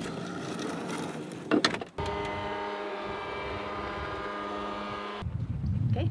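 The van's awning motor running at one steady pitch for about three seconds as the awning extends, then stopping abruptly. Before it there is a stretch of rustling noise with a couple of sharp clicks.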